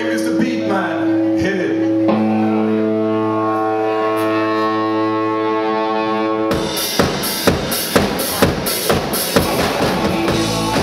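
Live punk-blues band: an amplified electric guitar chord rings on, held and changing to another chord about two seconds in. About six and a half seconds in the drum kit and the rest of the band come in with a hard, steady beat of about two strong hits a second.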